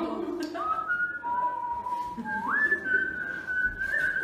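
A person whistling a short tune in clear, held notes: a couple of notes, a lower note held for about a second, then a slide up to a long high note held to the end.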